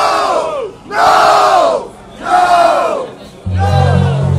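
Concert crowd shouting in unison three times, each long shout sliding down in pitch, in a call-and-response break of a live heavy metal song. The band's bass and guitars come back in near the end.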